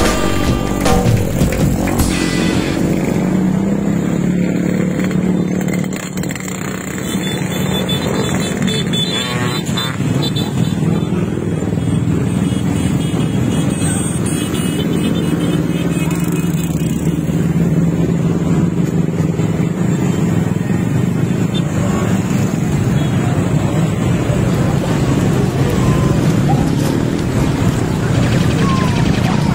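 Many small motorcycles and scooters running together at low speed in a slow convoy, a dense steady drone of engines.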